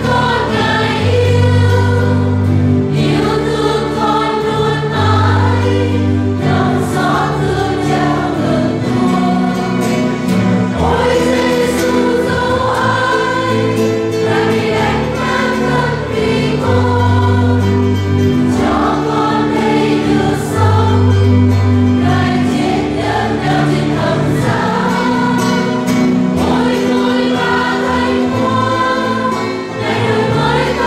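Choir singing a hymn during communion, with instrumental accompaniment whose held bass notes change every couple of seconds.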